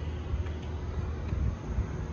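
Steady low background rumble, with no speech over it.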